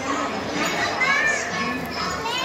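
Children's voices chattering and calling out, with a high-pitched child's call about halfway through, over the steady hubbub of a busy play area.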